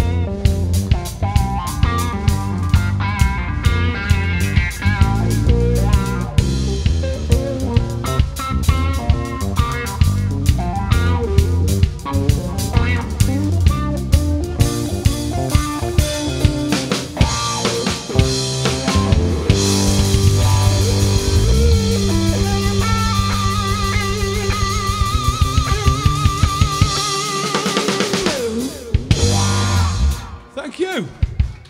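Live rock trio of drum kit, electric bass and electric guitar playing an instrumental passage, the guitar playing lead lines over a steady drum beat. Near the end the bass and kick drum drop out as the song winds down.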